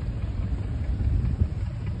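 Steady low rumble of a houseboat's engine as the boat cruises along.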